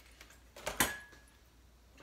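A single sharp click of a hard object being handled on a kitchen counter about a second in, with a faint brief ring after it, over a quiet room.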